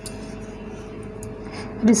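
A steady background hum with two constant tones, and a faint click right at the start. A woman starts speaking just before the end.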